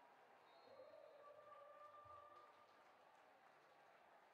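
Near silence: faint ambience of an empty stadium, with a faint held tone from about half a second to two and a half seconds in.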